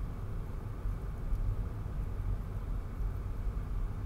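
Car cabin noise while driving: a steady low rumble of engine and road heard from inside the car.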